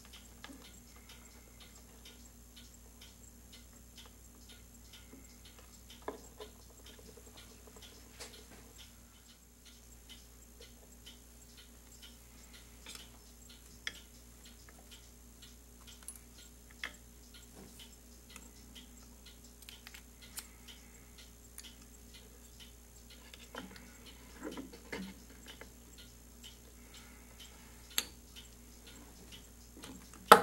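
Faint, steady, regular ticking, with occasional light clicks and taps as small metal pen-kit parts are handled and set down on a cloth-covered bench.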